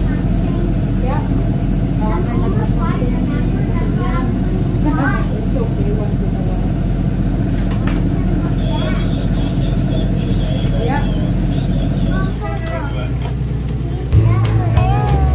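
Small passenger boat's engine running with a steady low drone, heard from inside the cabin, with people talking over it. Near the end the engine note changes and drops a little as the boat nears the dock.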